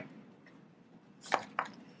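Two short sharp clicks about a quarter of a second apart, a little past the middle, over faint room tone.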